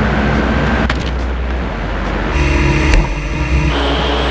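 Electric motors and propellers of RC aircraft running, a steady whirring hum. In the second half a higher whine of several steady tones, typical of multirotor propellers, joins in for about a second and a half.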